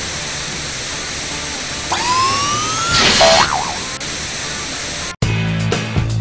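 Cartoon sound effects over a steady hiss: about two seconds in, a whistle slides up in pitch for about a second, then a short wobbling boing. The hiss cuts off suddenly near the end as music starts.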